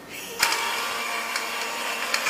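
Small countertop blender motor running steadily as juice is made, starting abruptly with a click about half a second in.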